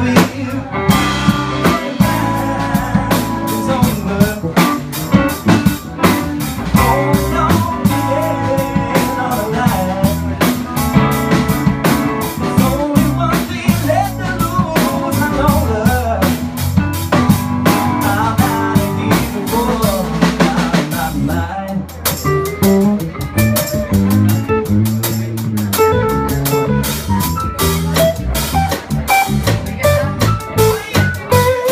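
Live blues band playing electric guitar, keyboard and drum kit to a steady beat. The bass and drums drop out briefly about two-thirds of the way through, then come back in.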